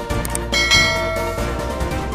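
Background music with a bell-like chime sound effect that rings out about half a second in and fades over about a second, preceded by a couple of faint clicks.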